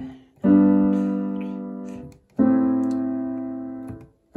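Digital piano playing two chords from the C–G–Am–F progression, struck with both hands about 2 seconds apart. Each chord is held and fades away before the next is struck.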